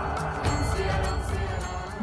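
Background music score with sustained tones and a steady, light percussive beat.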